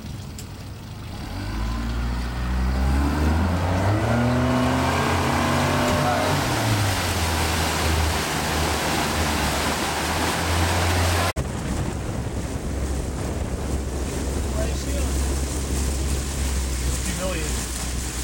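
Tow boat's engine accelerating from idle to pull a wakeboarder up out of the water, climbing in pitch over a few seconds, then settling into a steady run with rushing water. An abrupt break about eleven seconds in is followed by a steady low engine drone.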